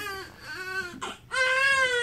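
Newborn baby crying: a short cry, a brief catch of breath a little past halfway, then a long, high wail.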